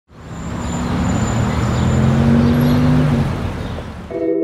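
A motor vehicle's engine running amid street traffic noise, swelling up quickly at the start and holding steady.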